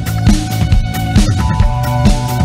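Background music with a steady beat, about two beats a second, over held notes.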